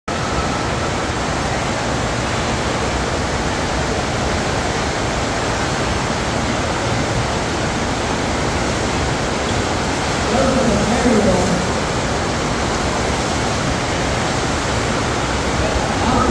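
FlowRider sheet-wave machine running: a steady rush of water pumped in a thin sheet up the padded slope. A voice briefly calls out about ten seconds in.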